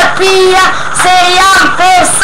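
A boy singing a song in Albanian loudly, close to a webcam microphone, in short held notes that bend up and down.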